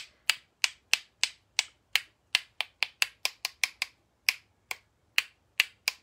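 Wooden paintbrush handle rapped against another wooden handle again and again, about three sharp clacks a second at an uneven pace, flicking white paint splatters off the bristles.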